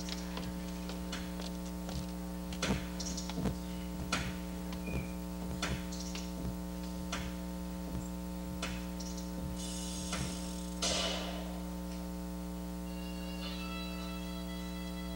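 Steady electrical mains hum in the sound feed, with short clicks and knocks scattered irregularly through it and a brief hiss about eleven seconds in.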